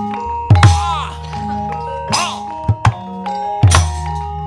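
Javanese gamelan playing battle music for a wayang kulit fight, cut through by loud, sharp knocks and clatters from the dalang's wooden cempala and metal keprak plates. The knocks come in quick pairs, about seven in all, some ringing on briefly.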